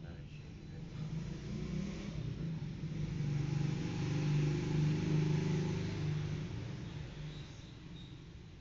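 A motor vehicle's engine passing by, heard from inside a room: a low, steady engine hum that grows louder over the first few seconds, peaks in the middle, and fades away.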